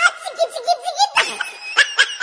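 A person laughing hard in quick, repeated bursts.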